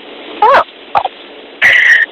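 Telephone-call voices over a faint line hiss: a short "Oh" about half a second in, a brief vocal blip, then a higher held vocal sound near the end.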